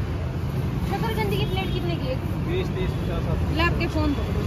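Steady low rumble of a busy street's traffic, scooters and motorbikes passing, with faint voices of people nearby.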